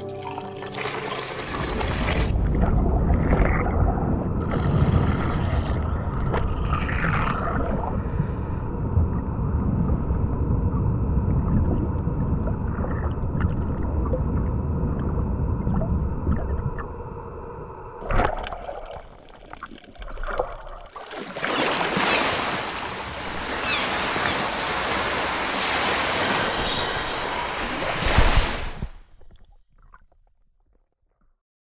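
Film soundtrack music with a steady held drone over a deep underwater rumble and water sounds. A loud hissing rush comes in about two-thirds of the way through and fades out just before the end.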